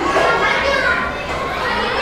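Children's voices: several children talking and calling out, their voices high-pitched and lively.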